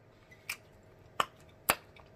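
Mouth making three sharp, wet lip-smacking clicks, about half a second apart, with no food in it.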